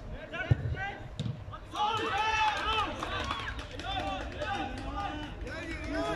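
Players' voices calling out during the game, with a sharp thud about half a second in, a football being kicked.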